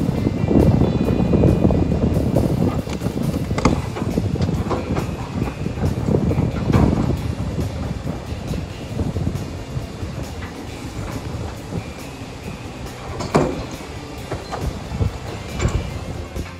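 Heavy construction machinery rumbling loudly with occasional metallic clanks, three of them sharp, easing off over the second half.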